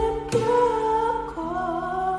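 A young man singing a slow song softly over sustained accompaniment chords, with a new chord struck about a third of a second in.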